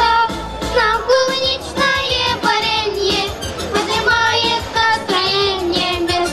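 A girl and a woman singing a Russian children's pop song into microphones, with instrumental accompaniment and a steady bass line underneath.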